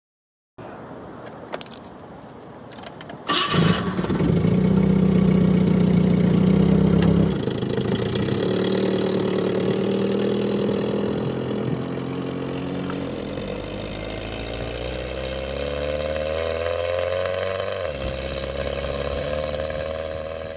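1972 Datsun 510's 1.6-litre four-cylinder engine starting about three seconds in after a few clicks, running loud at a fast idle for a few seconds, then settling to a lower, steady run. Later the engine note rises as the car pulls away, drops once at a gear change near the end, and climbs again.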